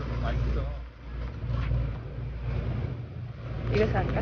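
Supermarket background noise: a steady low hum with indistinct voices in the background.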